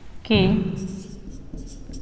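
Marker writing on a whiteboard, a few short faint strokes, while a woman says one drawn-out word, the loudest sound.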